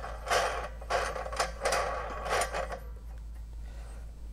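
A metal wing nut being spun by hand onto a threaded steel rod: a series of short scraping bursts with a sharp click in the middle, stopping about three seconds in.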